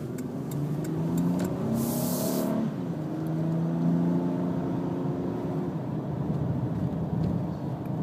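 Honda Ridgeline's 3.5-litre V6 heard from inside the cab while accelerating: the engine note rises, drops back about two and a half seconds in as the five-speed automatic upshifts, then rises again. A brief hiss comes about two seconds in.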